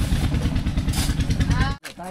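Motorbike engine idling with a fast, steady low pulse. Cardboard and packaged goods rustle in a box about a second in. The engine sound cuts off abruptly near the end.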